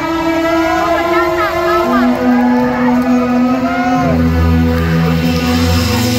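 Live rock band holding sustained chords on amplified instruments, the bass notes shifting lower about two seconds in and again about four seconds in, with some voices shouting over it in the first half.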